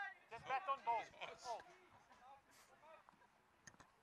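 Faint voices talking for the first couple of seconds, then near quiet with a few small clicks near the end.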